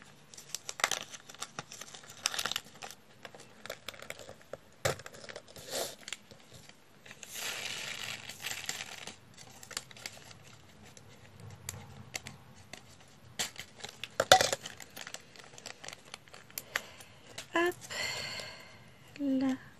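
Small plastic diamond-painting drills and clear plastic trays being handled while the leftover drills are put away: scattered light clicks and taps, with a longer stretch of rattling rustle about seven to nine seconds in.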